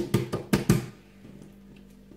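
A hand patting and slapping a paper-thin, buttered sheet of dough against a worktop: about five quick, sharp pats in the first second.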